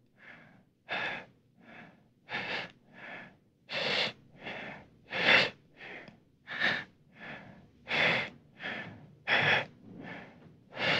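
A person breathing heavily and laboriously: a 'dying breaths' sound effect. Quick, regular breaths in and out come about every three quarters of a second, the louder and softer breaths alternating.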